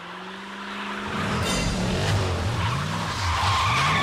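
A car's engine rising in pitch as it speeds up, then tyres skidding and squealing loudly from about a second in.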